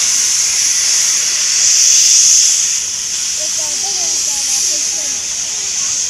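Steam locomotive C62 2 releasing steam in a loud, steady hiss that starts and stops abruptly, loudest about two seconds in.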